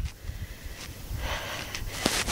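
Low wind rumble on the microphone, with a short intake of breath just over a second in.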